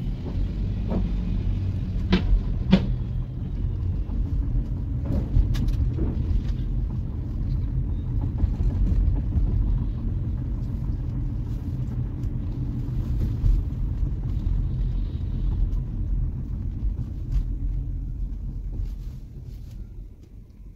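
Car driving, its low road and engine rumble heard from inside the cabin, with a few sharp clicks or knocks, two of them close together about two seconds in. The rumble fades out near the end.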